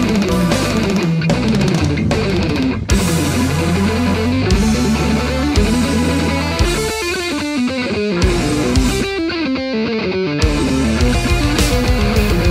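Electric guitar with a heavy, metal-style tone playing a fast passage: rapid runs of notes that sweep down and up in pitch. Near the end it moves into fast, evenly repeated picked notes.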